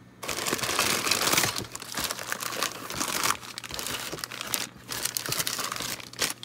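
Clear plastic parts bags of a plastic model car kit crinkling and rustling as they are handled and lifted out of the cardboard kit box, with brief lulls between handfuls.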